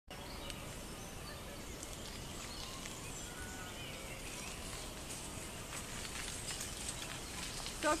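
Steady outdoor background noise with scattered faint, short bird chirps; a voice starts speaking right at the end.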